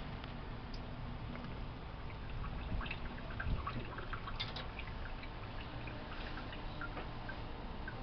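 Distilled water from a plastic squeeze wash bottle running onto a glass slide and dripping into a stainless steel sink: scattered small drips and splashes, with a couple of soft knocks partway through.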